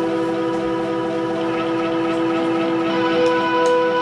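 Electric guitars holding one steady, droning chord that rings on unchanged, loud, with no drum beat under it.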